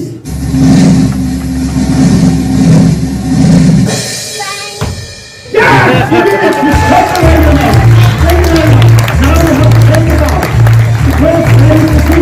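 A recorded drum roll played over the hall's sound system for about four seconds, ending on a cymbal crash that rings away. About five and a half seconds in, upbeat music with a steady drum beat starts suddenly to mark the trick's finish, with some applause.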